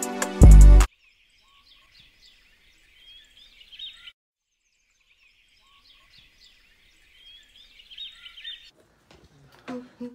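Background music cuts off about a second in, followed by faint chirping of small birds in two stretches of about three seconds each. A few clicks come near the end.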